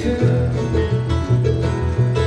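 Bluegrass band playing an instrumental passage between sung lines: acoustic guitar and mandolin over upright bass notes that alternate in a steady two-beat rhythm.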